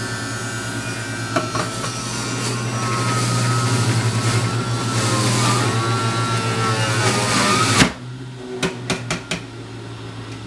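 Stainless steel centrifugal juicer running with a steady motor hum and a high whine while pineapple pieces are pushed down its chute, the noise growing louder and the whine dipping in pitch under load. About eight seconds in the noise cuts off suddenly, followed by a few light knocks.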